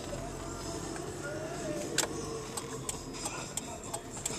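Steady road and engine noise inside a moving car's cabin, with a scattering of light clicks, the sharpest about halfway through.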